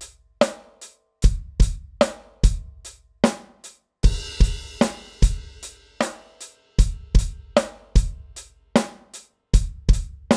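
Electronic drum kit playing a simple groove in 7/8 time, grouped as three then four eighth notes, with bass drum, snare and eighth-note hi-hat. A crash cymbal comes in about four seconds in.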